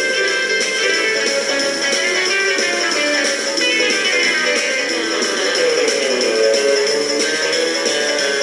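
Rock and roll instrumental break between sung verses: a band with guitar to the fore, played loud and steady, with a falling run about halfway through.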